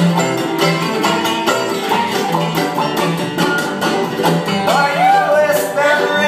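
Acoustic string band playing live: strummed acoustic guitar and other plucked strings keep a steady rhythm. About five seconds in, a high melody line with swooping, bending notes comes in.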